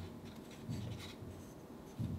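Dry rice flour and baking powder being sifted through a fine-mesh sieve into a glass bowl: a soft scratchy rustle with a few dull knocks as the sieve is shaken.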